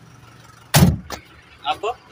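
One loud thump inside a truck cab about a second in, followed by a lighter click, over the faint low running of the truck's just-started engine.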